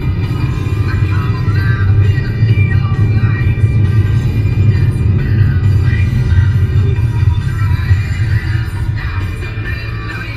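Music playing from the car radio, heard inside the car's cabin, steady and loud.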